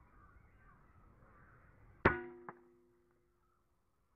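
Artemis P15 PCP air rifle firing once, about halfway in: a sharp crack followed by a ringing hum that fades over about a second, with a fainter click half a second after the shot.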